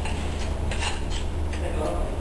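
A few light clinks and taps over a steady low hum.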